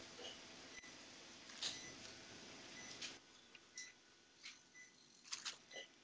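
Near silence: faint room tone with a soft short beep about once a second, like a patient monitor's pulse tone.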